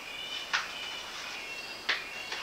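Paper-page handling: two short crisp noises from a picture book's page, about half a second in and again near the end as the page begins to turn.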